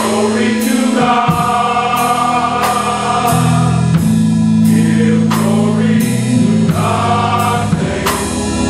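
Men's gospel choir singing in harmony over an accompaniment with held bass notes and a steady beat, about three strokes every two seconds.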